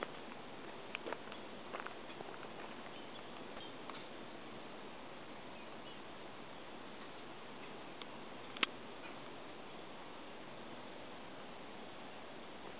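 Quiet outdoor background: a steady faint hiss with a few light clicks, and one sharper click about two-thirds of the way through.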